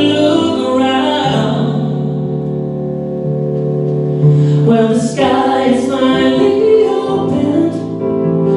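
Male singer singing live into a microphone over instrumental backing, with a short break between phrases about halfway through.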